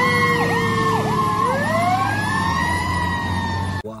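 Fire engine siren: a fast yelp sweeping up and down about twice a second, giving way to a slow rising then falling wail, over a steady low drone. It cuts off suddenly just before the end.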